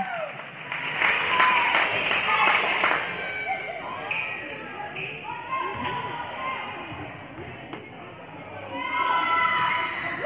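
Gymnasium crowd noise: many voices chattering and calling in a large hall, with several sharp ball bounces on the court in the first few seconds. The voices swell again near the end, as the second free throw goes in.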